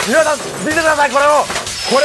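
A high-pitched voice making a string of drawn-out, rising-and-falling vocal sounds, about two a second, from a Japanese film clip played within the podcast.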